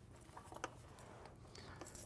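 Faint rustling and a few light knocks as a person lies back on a wooden weight bench, about half a second in.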